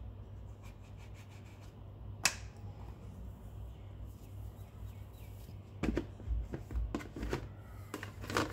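Quiet kitchen handling sounds as rounds are cut from rolled dough with a fluted plastic cutter on a countertop: a sharp click about two seconds in, then a few soft knocks later on, over a steady low hum.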